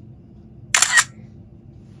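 A camera shutter click: one short, sharp snap about three quarters of a second in, over faint room tone.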